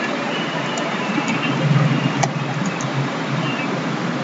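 A few sharp computer-keyboard keystrokes, about five spread over the middle, over steady background noise with a low rumble that swells briefly in the middle.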